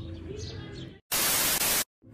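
Video-edit glitch transition: a burst of TV-style static hiss, about three quarters of a second long, that starts and cuts off abruptly. It comes after about a second of faint background sound.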